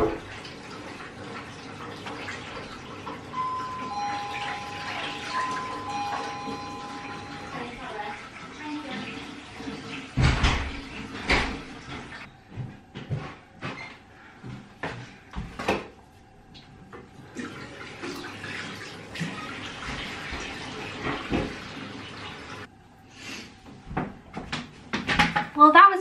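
Two-tone doorbell chime ringing a high-then-low ding-dong twice, about four seconds in, over running tap water. Scattered knocks and thumps follow later.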